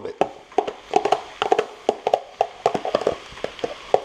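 A spoon knocking and scraping the last of the cooked rice out of a plastic container into a frying pan, a quick, irregular run of short knocks and clicks.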